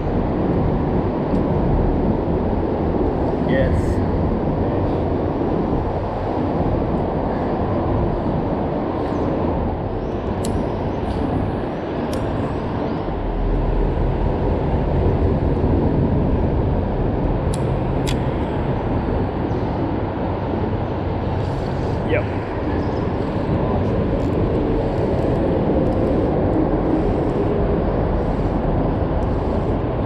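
Steady rumble of road traffic crossing the bridge overhead, with a few faint sharp clicks near the middle.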